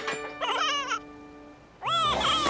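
A cartoon character's short, high, cat-like babbling call over a held note of background music. The music thins out near the end.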